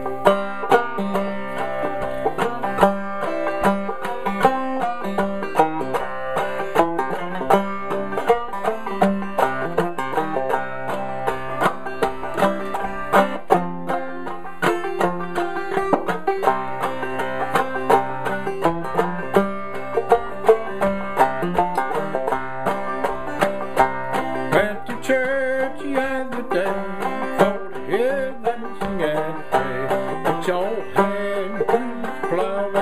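Solo banjo playing a syncopated old-time tune: a steady, unbroken run of plucked notes.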